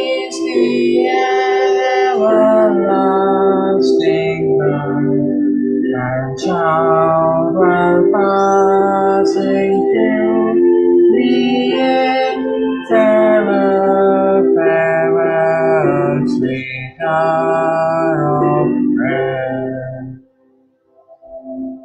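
A woman singing a hymn with instrumental accompaniment, heard over a video call. The singing and music stop abruptly at the very end.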